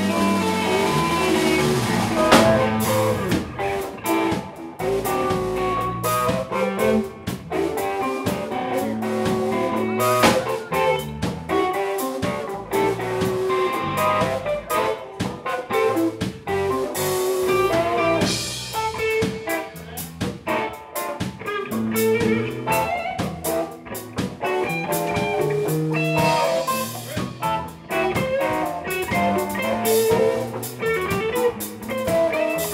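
Live band jamming: two electric guitars, electric bass and drum kit playing together in a blues-leaning groove.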